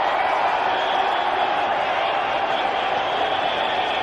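Cricket stadium crowd cheering, a steady dense noise that carries on without a break.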